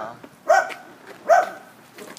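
A dog barking: loud single barks repeating a little under a second apart.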